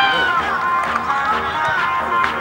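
A produced beat with regular drum hits and sustained tones. A man's voice from the field calls out over it right at the start.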